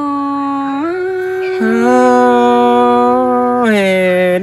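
Thái folk singing with long, drawn-out held notes: one voice steps up in pitch a little under a second in, a second, lower note joins it about one and a half seconds in, and both stop shortly before the end.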